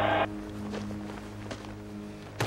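Background music holding a low, steady tone. A louder noise cuts off suddenly about a quarter second in, leaving the music quieter.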